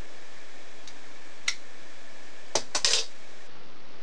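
Scotch tape being pulled off a small handheld dispenser and torn on its cutter: a couple of faint clicks, then a quick burst of clicking and rasping about two and a half seconds in, over a steady hiss.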